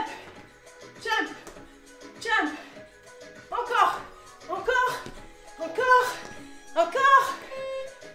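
A woman's short voiced cries of effort while jumping through a cardio exercise, each falling in pitch, about one every second and a bit.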